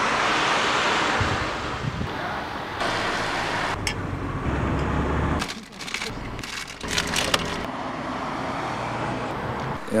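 Outdoor street noise: traffic and wind on the microphone, loudest in the first couple of seconds, with a brief low rumble and then a few sharp knocks around the middle.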